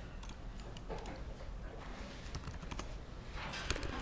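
Faint, scattered clicks of a computer keyboard and mouse, a little more frequent near the end.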